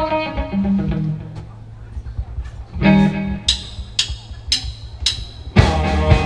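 A live rock band getting into a song: electric guitar and bass play a few notes and a chord, four sharp clicks about half a second apart count in, and the full band starts together near the end.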